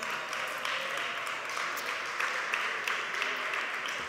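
Applause: many people clapping together at a steady level, a dense run of small claps that lasts throughout.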